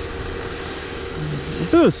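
Steady drone of an engine running at a constant pitch with a low rumble beneath, from the road line-painting crew's truck and machinery. A man's voice speaks a few words near the end.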